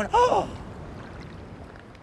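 A man's loud shouted call, cut off about half a second in, followed by faint steady outdoor background noise.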